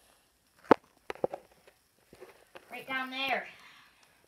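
A single sharp knock about a second in, a hand striking a wall during a sock throw, followed by a few lighter taps. Near the end a child's voice calls out briefly.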